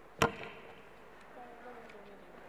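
A single sharp knock on a microphone, about a quarter second in, picked up loudly through the hall's PA, typical of the mic being handled; faint voices follow in the background.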